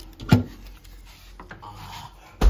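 Freezer being rummaged: a plastic-wrapped frozen sausage and its bag handled against the freezer drawer, with one short, loud knock about a third of a second in, then quieter rustling and a small click.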